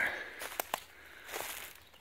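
Footsteps on dry leaf litter and twigs: a few soft rustling steps with a couple of sharp snaps in between.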